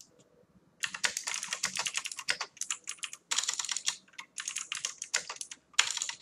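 Typing on a computer keyboard: fast runs of keystrokes starting about a second in, broken by two short pauses.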